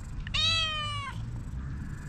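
Calico cat meowing once, a single call just under a second long whose pitch drops slightly at the end.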